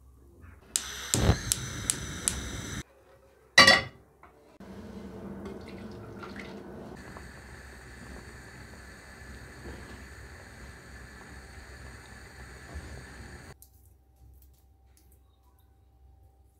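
Water boiling hard in a small saucepan holding three eggs over a gas burner: a steady bubbling hiss that stops suddenly near the end. It is preceded in the first few seconds by a loud rushing stretch with a few sharp clicks and a brief loud burst.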